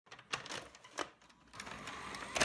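Two faint sharp clicks, then a soft hiss that comes up in the second half.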